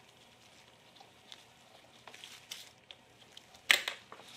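Faint handling noise as an inline spark tester's connectors and lead are fitted onto a trimmer's spark plug and plug boot: small scattered clicks and rubbing, with a brief louder noise near the end.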